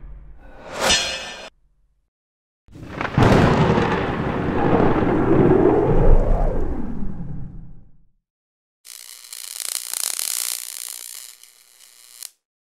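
Logo-animation sound effects: a short rising whoosh about a second in, then a loud thunder-like rumble with a tone that bends up and down, fading out over about five seconds. After a pause comes a hissy, crackling glitch-static sound lasting a couple of seconds.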